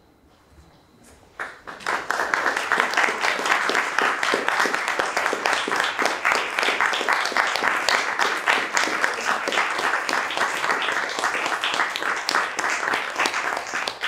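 Audience applauding: the clapping breaks out about a second and a half in and continues steadily.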